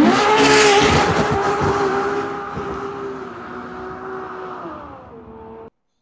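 Ferrari 812 Superfast's 6.5-litre V12 revving hard as the car accelerates. The engine note rises sharply at the start, then holds high while it slowly fades into the distance, drops a little in pitch near the end and cuts off abruptly.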